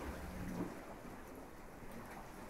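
Ocean waves washing onto a beach: a steady rush of water noise with a low rumble underneath.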